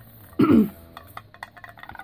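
A wooden craft stick stirring acrylic paint in a small metal tin can, giving a run of light clicks and scrapes against the can. A short throat-clear about half a second in is the loudest sound.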